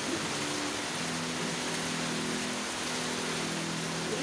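A steady hiss with low, held droning tones coming in about a second in, from a television programme's soundtrack played through a speaker.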